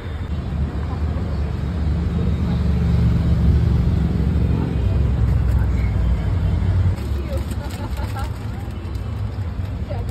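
Low rumble of a road vehicle passing close by. It builds over the first few seconds, is loudest around three to four seconds in, and falls away about seven seconds in.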